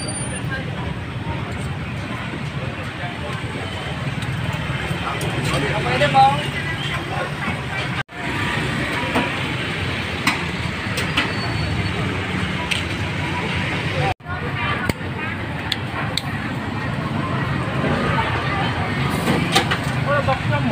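Busy street-market bustle: indistinct voices of people nearby over a steady hum of traffic, with scattered short clicks. The sound cuts out abruptly twice, briefly.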